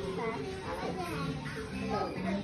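Young children's voices chattering and babbling, over faint background music.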